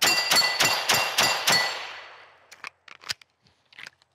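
Pistol fired six times in rapid succession over about a second and a half at a rack of steel plates, the hits setting the steel ringing. The ringing fades away over the following second.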